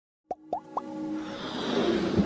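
Animated logo-intro sound effects: three quick rising bloops in the first second, then a swelling whoosh with a held synth tone beneath, building in loudness towards the end.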